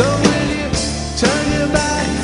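Live rock band playing with a man singing lead, the drums keeping a steady beat of about two hits a second.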